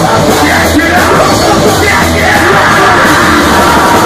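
Loud live punk rock band playing: distorted electric guitar, bass and drums under shouted vocals.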